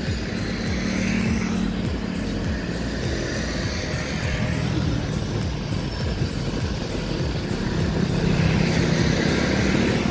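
Wind buffeting the microphone over the low rumble of a passenger train approaching in the distance, swelling a little about a second in and again near the end.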